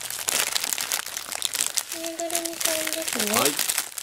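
Clear plastic bag crinkling continuously as hands handle it and pull it open.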